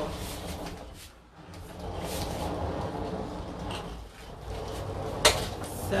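Scuffing and rubbing handling noise around a worktable, with a single sharp knock about five seconds in; by the end a sanding block is rubbing over paper glued to the tabletop.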